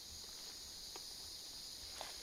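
Steady, high-pitched chorus of insects in summer woodland, with faint low rumble from the handheld camera beneath it.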